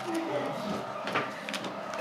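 Clear plastic pocket pages of a trading-card binder being turned and slid, a soft crinkling rustle with one short slap of a page a little past a second in.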